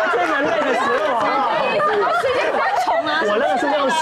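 Speech only: several people talking over one another in Mandarin.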